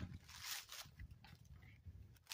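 Faint rustling and crackling of dry, shaggy cedar bark and twigs being pulled at by hand, a few soft scratchy rustles.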